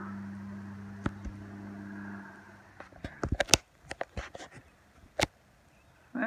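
A steady low engine-like drone that fades out about two seconds in, followed by a scatter of sharp clicks and knocks.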